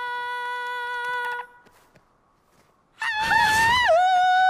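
A woman's voice holding a long sung "ahh" note, which stops about a second and a half in. After a silent gap, a much louder, rough wordless wail with a wavering, falling pitch starts near the end: a comic imitation of the sung call.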